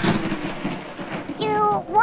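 Cartoon sound effect of a toaster dropped into pool water: a loud hissing, rumbling noise that fades over about a second and a half. A voice starts talking near the end.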